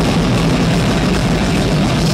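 Live metal band playing loud: distorted electric guitar over a drum kit, a dense, unbroken wall of sound.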